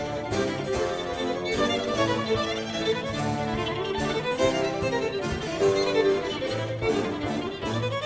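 Baroque violin playing fast, ornamented divisions over harpsichord continuo, with a bass line beneath.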